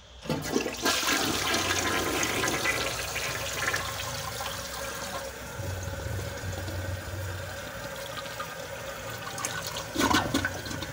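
Toilet flushing: water rushes into the bowl and swirls down the drain, starting suddenly about half a second in, loudest over the first few seconds, then settling to a quieter steady run.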